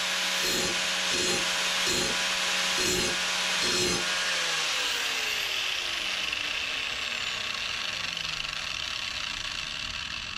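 Angle grinder grinding the edge of a steel lawn mower blade, with a steady whine and rhythmic pulses about every three-quarters of a second. About four and a half seconds in it is switched off, and its whine falls in pitch as the disc spins down.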